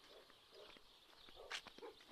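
Near silence: faint outdoor quiet with a few faint short sounds, the clearest about one and a half seconds in.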